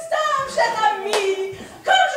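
A high-pitched voice calling out in short exclamations, with one sharp crack a little past halfway.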